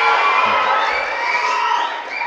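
An audience cheering and shouting loudly, with many overlapping high calls rising in pitch.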